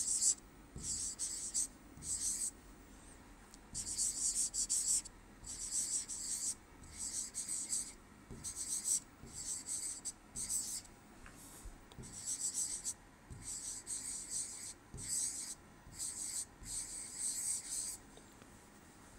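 A pen stylus scratching across a writing tablet in quick, uneven strokes as handwriting is written, short scratchy rasps separated by brief pauses.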